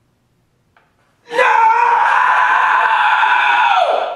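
A woman's scream of distress, starting about a second in and held steady on one pitch for about three seconds before falling off at the end.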